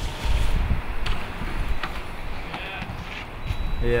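Skis sliding and scraping over snow and a street feature, a rough noise with a few faint knocks, with a short shout of "yeah" near the end.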